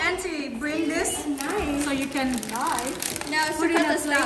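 Several voices talking over one another, a woman's among them, in an indoor group conversation.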